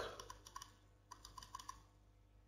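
Faint typing on a computer keyboard: a few soft key clicks, then a quick run of about six more a second in.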